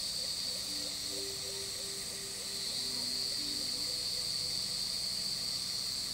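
Steady high-pitched chorus of insects, with a few soft, low melody notes faintly underneath about one to three seconds in.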